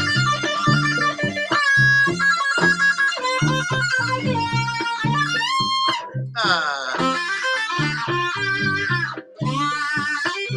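Violin played through a Boss ME-80 multi-effects pedal with distortion and delay, giving an overdriven, electric-guitar-like tone over a rhythmic, pulsing line of notes. A quick upward slide in pitch comes a little past halfway, then a short break.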